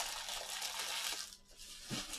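Trading-card pack wrappers rustling as they are swept aside by hand, dying away about a second and a half in.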